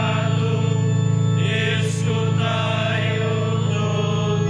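Liturgical chant sung by voice over held instrumental chords: a sung response between the readings at Mass.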